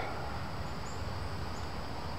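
Steady outdoor background noise in woodland, a hiss over a low rumble, with a few faint high chirps from insects or birds.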